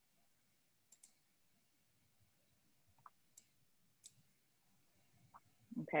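A handful of faint, short clicks scattered over near silence, a pair about a second in and single ones after that.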